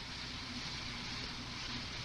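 Steady hiss and low hum, the background noise of an old 1955 recording, with no speech or other event.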